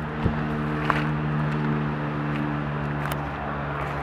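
Steady low hum of a running vehicle engine, with a single knock about a third of a second in.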